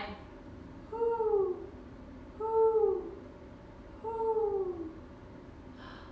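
A woman imitating an owl: three drawn-out "whoo" hoots about a second and a half apart, each falling in pitch.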